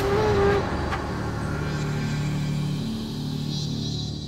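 Dramatic background score under reaction shots: a low, steady droning rumble with sustained low tones, after a short held note at the start.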